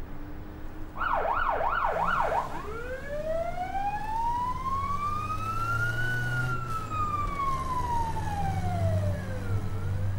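Police car siren: a quick burst of fast yelping whoops about a second in, then one long wail that rises and falls over about seven seconds and starts to rise again near the end. A low, steady vehicle rumble lies under it.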